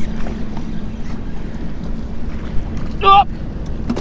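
Wind rushing over the camera microphone out on open water, with a faint steady hum underneath and a few faint ticks. A man's short excited "oh!" cuts in about three seconds in.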